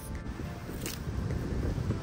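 Wind buffeting the microphone in a low rumble, with a brief rustle of long grass being stuffed into a cloth bag about a second in.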